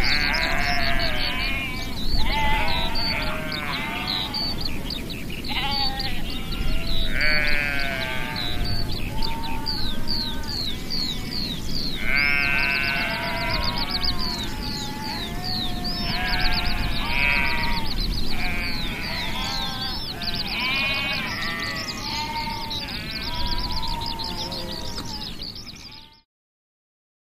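Sheep bleating again and again over continuous birdsong, with a steady background hiss underneath; the sound fades out at the very end.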